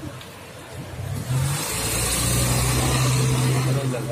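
A van driving past close by: engine hum and tyre noise that build up from about a second in and stay loud as it goes by.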